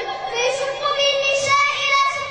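A young girl's voice chanting melodically into a microphone, holding long notes.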